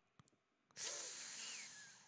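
A man's breath into a close microphone: one hissing exhale about a second long, starting about three-quarters of a second in.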